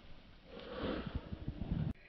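Footsteps crunching in packed snow, with a sniff about a second in. The sound cuts off suddenly just before the end.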